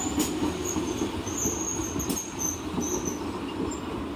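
Kolkata suburban electric local train (EMU) rolling past the platform: a steady rumble of wheels on rail, with high-pitched squeals that come and go, strongest about halfway through.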